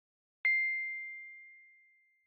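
A single bright chime struck once about half a second in, ringing as one high tone that fades away slowly over about a second and a half.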